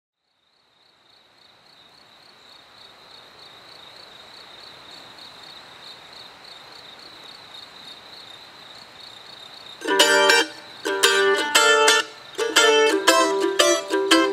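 Outdoor ambience fades in from silence: a faint hiss with a steady, pulsing high drone. About ten seconds in, a mandolin starts playing loud picked chords in short phrases, ringing on in the natural reverb of the surrounding trees.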